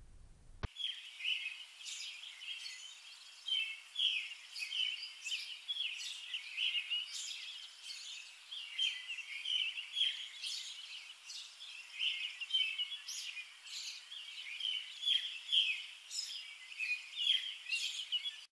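A chorus of small birds chirping, many short high calls overlapping without a break, starting about a second in.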